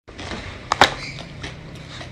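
Crispy fish chips being chewed: two short, sharp crunches just under a second in, over a faint steady background.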